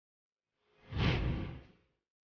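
A single whoosh sound effect about a second long, swelling and fading away, starting near the middle after dead silence.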